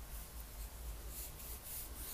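Faint scratching of a pencil drawing light strokes on paper.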